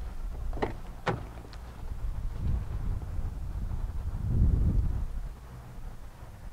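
Car door being opened: two sharp clicks of the handle and latch about half a second apart, followed by low rumbling noise as the door swings open and the camera is moved.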